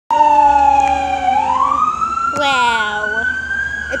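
FDNY battalion chief's vehicle siren in a slow wail: its pitch sags, rises a little over a second in, and holds high. A second, quickly warbling tone cuts in briefly about two and a half seconds in.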